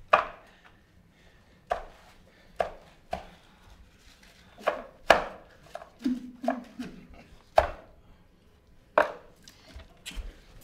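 Dice being played on a small tabletop: about ten sharp knocks and clatters at uneven intervals as dice are thrown and set down.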